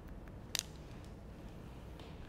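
Hair-cutting scissors closing once through a section of long hair: a single sharp snip about half a second in, with a couple of faint lighter ticks just before it.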